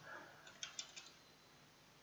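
Faint computer keyboard keystrokes: a quick run of about five light clicks about half a second in, over near-silent room tone.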